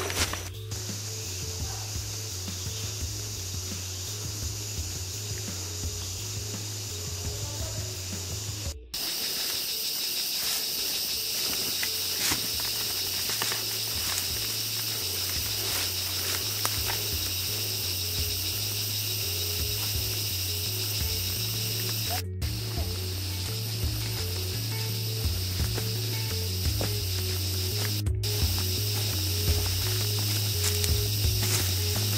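Steady high-pitched insect drone of the rainforest, with background music and its low bass notes underneath. The sound cuts out briefly three times, at about nine seconds, twenty-two seconds and twenty-eight seconds in.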